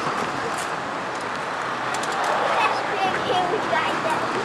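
Steady outdoor street noise from traffic, with faint, indistinct voices in the background.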